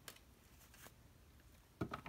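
Quiet room with a few faint clicks, then near the end a short knock as a deck of tarot cards is picked up off the table.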